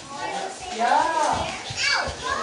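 Children's voices at play, with one high child's voice rising and falling about a second in.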